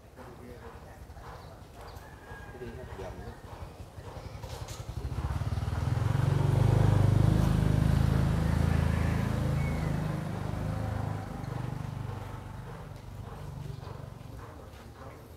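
Engine of a vehicle passing on the road, growing louder to a peak about seven seconds in, then fading away.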